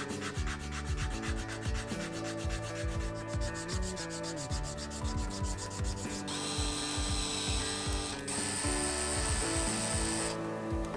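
Sandpaper rubbed back and forth by hand on a small wooden truss rod cover blank, in quick even strokes of about five a second. About six seconds in, the strokes give way to a steady hiss, with a brief break a couple of seconds later.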